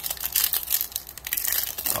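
Foil wrapper of a Bowman Chrome baseball card pack being torn open and crinkled in the hands, a quick run of sharp crackles.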